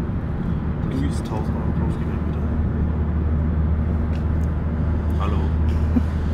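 Cabin noise of a Škoda car driving at motorway speed: a steady low rumble of engine and tyres with road noise above it.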